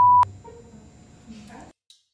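A steady, loud censor bleep tone that cuts off suddenly about a quarter second in, masking a spoken answer. After it there is faint low-level murmur, and the sound drops out to dead silence for a moment near the end.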